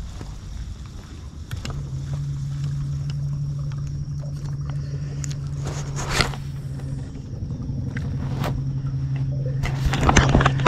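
A boat motor running at low speed with a steady low hum, easing off briefly twice. Scattered sharp clicks of rod and reel handling sit on top, the loudest about six seconds in.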